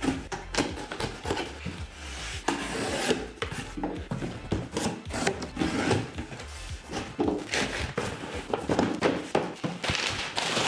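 Cardboard shipping boxes being opened by hand: an irregular run of scraping, rubbing and tearing with sharp clicks as the tape is cut and the flaps are pulled back.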